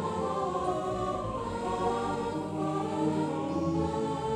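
Synthesizer music: slow, sustained chords with a choir-like sound, the notes held and shifting gently from chord to chord.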